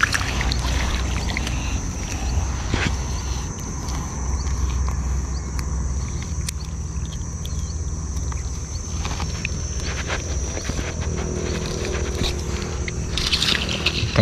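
Water sloshing and small splashes as a gill net is pulled by hand out of shallow floodwater. Underneath runs a steady low rumble and a thin, steady high-pitched whine.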